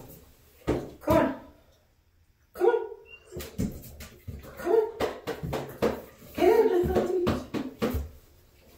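A Great Dane puppy's paws and claws knocking and scuffling against a bathtub and tiled floor as she is coaxed to climb in: a run of short sharp knocks, with low voices in between.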